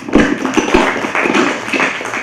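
A small group applauding with quick, dense claps close to the microphone. Two low thumps within the first second come from the handheld microphone being handled.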